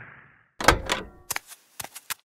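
Cartoon door sound effect: a quick, irregular series of sharp clicks and knocks, like a latch and handle being worked as a door is opened, starting about half a second in.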